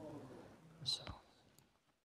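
A man's voice trailing off faintly, with one short whispered, hissing syllable about a second in.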